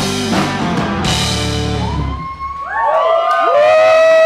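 Live rock band playing loud amplified music with drums and a cymbal crash about a second in. After about two seconds the band thins out into sliding, bending pitches that settle into a loud held tone near the end.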